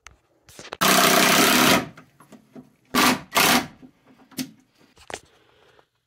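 Cordless drill driving screws through a particle-board shelf into a wooden beam: one run of about a second, then two short bursts a second or so later, with a few clicks and knocks in between.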